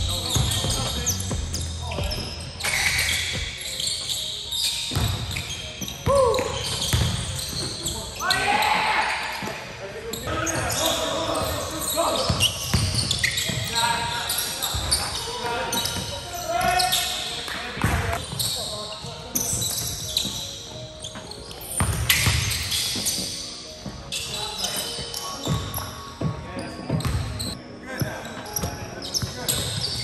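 Basketballs bouncing on a hardwood gym floor, with sneakers squeaking and players calling out during a full-court pickup game. Frequent short thuds and squeaks come throughout, with no quiet stretch.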